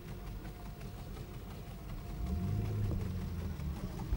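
Low, steady outdoor rumble with a louder low droning hum that swells for about a second and a half in the second half.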